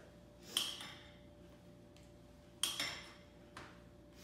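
A metal spoon clinking sharply twice, about half a second in and again past two and a half seconds, with a lighter tap just after, as it is used to scoop vanilla yogurt into a zip-top bag.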